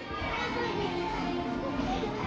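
Steady background din of a large indoor play area: distant children's voices mixed with background music, with no nearby voice.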